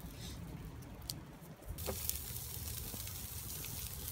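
Bacon rashers sizzling in a wire grill basket over campfire embers. The hiss comes in suddenly a little under two seconds in, with a few crackles from the fire.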